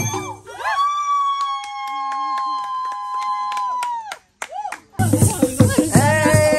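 Luo traditional dance music: voices glide up into a long high note and hold it steady for about three seconds over light rattle clicks, then break off about four seconds in. Near the end, drumming and singing start again abruptly.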